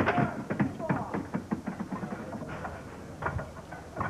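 Candlepins clattering as they are knocked down and roll on the wooden lane, a quick run of knocks that dies away over the first second or so, followed by a low murmur of audience voices.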